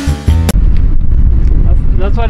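Music that cuts off abruptly about half a second in, followed by a loud, steady low rumble of wind buffeting the microphone outdoors.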